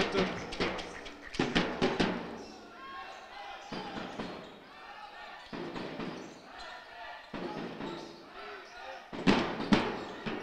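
Basketball dribbled on a sports hall floor, the bounces echoing in the hall, over crowd voices. A cluster of sharp hits sounds in the first two seconds and again near the end.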